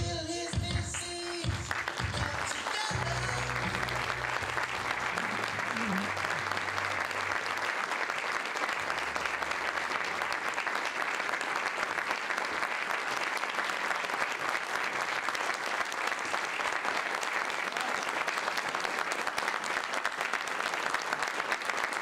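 Audience applauding steadily, with closing music fading out over the first few seconds.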